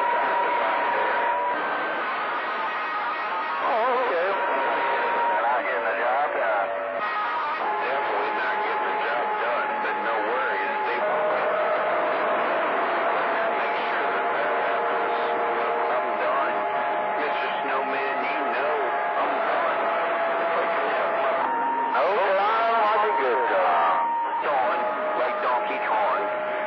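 CB radio receiving distant skip on channel 28: hissy, band-limited static with several steady whistles from overlapping carriers that shift pitch every few seconds, and faint garbled voices breaking through now and then.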